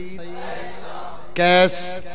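A male orator's chanted delivery through a public-address microphone: a steady low drone, then about one and a half seconds in a short, loud chanted call that rises in pitch and ends on a hissed 's'.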